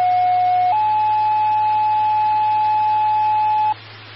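Two-tone sequential pager alert sent over the dispatch radio channel: a lower steady tone for about a second, then a slightly higher tone held for about three seconds, over radio hiss and hum. It is the tone-out that sets off the county victim services pagers.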